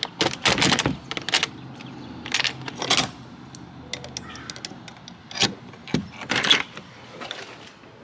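Brass combination padlock and metal hasp on a wooden shed door clinking and rattling as the lock is unlatched, pulled off the hasp and the hasp swung open: a string of sharp metallic clicks in several clusters.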